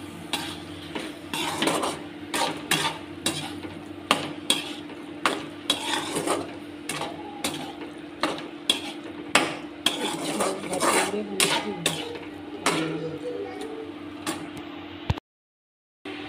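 A slotted spatula stirring and scraping in a kadhai of thick masala gravy with paneer and peas, knocking against the pan several times a second, over a steady low hum. The sound cuts off abruptly about a second before the end.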